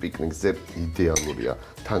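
Metal fork clinking and scraping against a glass bowl as raw pork pieces are mixed into a marinade, with several sharp clicks.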